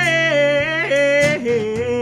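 A man singing long held high notes with vibrato, stepping down in pitch, over a strummed acoustic guitar.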